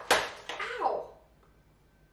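Parchment paper torn sharply off the roll against the box's cutting edge, followed by a short cry falling in pitch as the edge gives her a paper cut; quiet for the last second.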